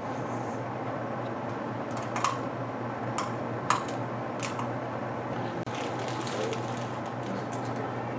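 Scattered light clicks and taps as paper cups are handled and set on the Van de Graaff generator's metal dome, over a steady low hum. The sharpest clicks fall in the middle of the stretch.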